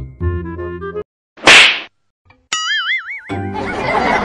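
Edited-in comedy sound effects: a brief bit of jingly music, then one loud slap sound about one and a half seconds in, followed by a warbling tone that wavers up and down for about a second and a dense noisy wash near the end.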